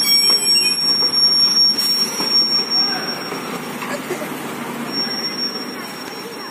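Indistinct talking of people in the background, with a steady high-pitched whine running through it that drops out briefly around four seconds in.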